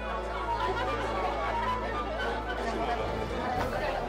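A room full of people chattering and talking over soft background music.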